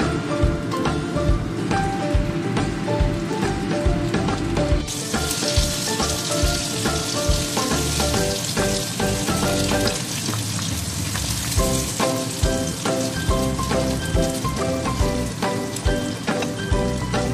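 Background music with a steady beat. About five seconds in, a steady sizzle of hot cooking oil in a wok over a gas flame joins it.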